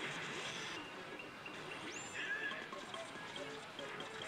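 Pachislot machine game audio: electronic effect tones and music with snatches of voice, over the steady din of a pachinko hall, and a quick rising whistle-like effect about two seconds in.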